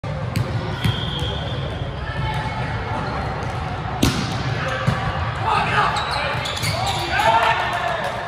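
Sharp smacks of a volleyball being hit in a gym, the loudest about four seconds in, with players shouting to each other in the second half.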